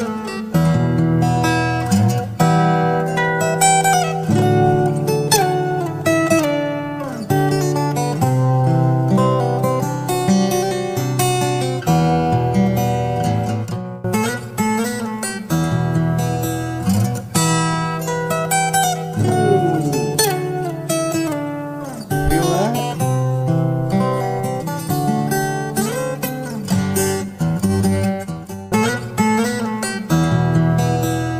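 Solo fingerstyle steel-string acoustic guitar playing a melody over bass notes, with notes sliding in pitch around two-thirds of the way through.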